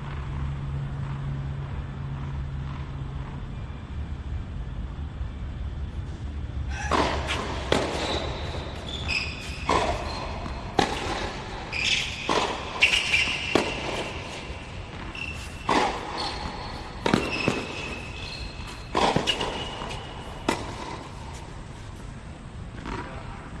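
Tennis rally on an outdoor hard court: a tennis ball struck back and forth, a string of sharp pops roughly every one to two seconds starting about seven seconds in and stopping near the end, with brief high squeaks among the hits.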